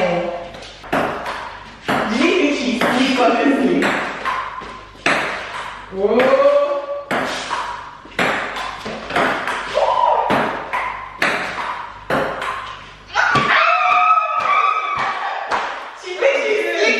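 Table tennis rally: the plastic ball clicks sharply off the paddles and the table top, shot after shot. Women's voices and exclamations come in between the strikes.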